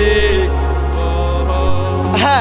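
Live gospel worship music: a man's voice holds a long sung note that ends about half a second in, then the instrumental backing carries on alone, shifting to a new low note near the end.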